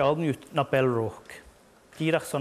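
A man speaking, stopping a little after a second in.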